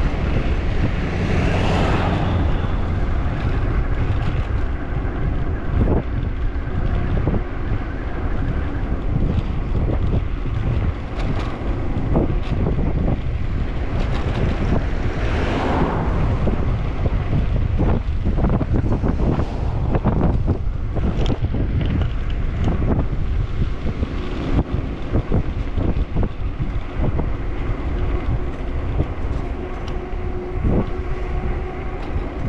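Wind buffeting the microphone of a camera riding on a moving bicycle: a steady low rumble, with frequent small knocks and rattles from the bike on the road. Two louder swells of hiss rise and fade, one near the start and one about halfway through.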